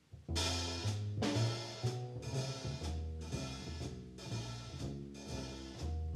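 A small jazz combo starts playing about a third of a second in, after near silence. Drums keep time with strokes about twice a second under a low bass line that moves note by note, with other pitched instruments above.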